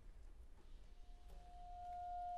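Near silence in a pause of a chamber octet's playing, then a single soft held note enters about a second in and sustains, with a fainter higher note joining near the end.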